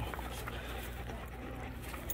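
Several dogs panting and milling about close by, faint, over a low steady rumble.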